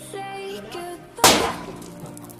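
Background music with singing, and a little over a second in a single sharp burst that fades quickly: a water-bomb firecracker going off in a steel plate of water.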